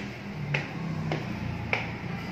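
Footsteps climbing tiled stairs: sharp shoe clicks a little under two a second, over a low hum.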